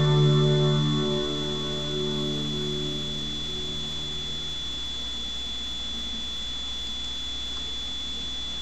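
The last held chord of the song's music ringing out and fading away over about five seconds, over a steady thin high-pitched electronic whine and a low hum.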